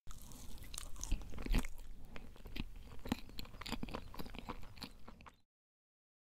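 A person chewing a mouthful of crepe cake with whipped cream, close to the microphone: many irregular small clicks and smacks that stop about five and a half seconds in.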